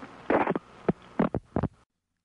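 Tail of an old tape recording of a telephone call: a buzzing hum on the line with a few short bursts of sound over it. It cuts off abruptly near the end.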